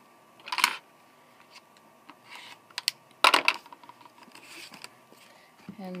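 A rotary cutter and an acrylic quilting ruler being worked on a cutting mat while fabric binding is trimmed: two short cutting noises about three seconds apart, with a few light clicks between them.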